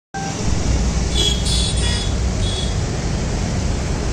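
Suzuki 1.3 DDiS four-cylinder turbo-diesel engine of a Swift Dzire ZDi idling steadily under an open bonnet, a low even rumble.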